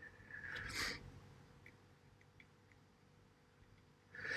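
Quiet room tone with one short breathy rush of air about half a second in, like a person's breath. A few faint light clicks follow.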